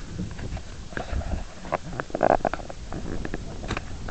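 Handling noise from a hand gripping and rubbing over a small camera's body and microphone: low rumbling with scattered clicks and knocks.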